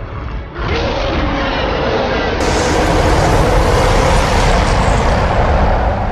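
Loud film soundtrack of music mixed with dense sound effects. It starts suddenly about half a second in and holds steady, with a cut about two and a half seconds in.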